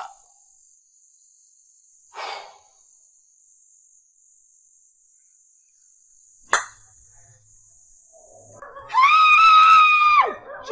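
A steady high insect trill, typical of crickets, sounds under an otherwise quiet night, with a short soft rustle or breath about two seconds in and a click later on. Near the end comes a loud, long, high-pitched scream, held on one pitch for about a second and a half.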